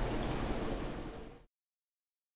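Steady rush of water from aquarium filtration. It cuts off abruptly to silence about one and a half seconds in.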